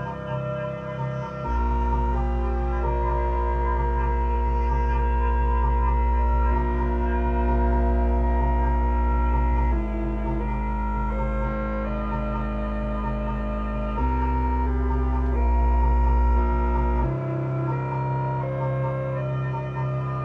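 Buchla 200-series modular synthesizer playing a generative patch: layered sustained electronic tones that shift pitch in steps. A deep bass note comes in after about a second and a half, changes pitch a couple of times, and drops out about three seconds before the end.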